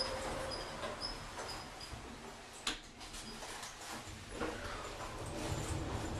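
Otis Europa 2000 traction lift car setting off upward: a low steady rumble of the car in motion, a faint high whine in the first second or so, and a sharp click about two and a half seconds in.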